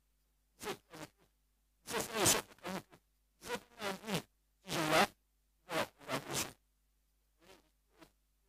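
A man speaking in short, choppy phrases, each cut off to dead silence before the next.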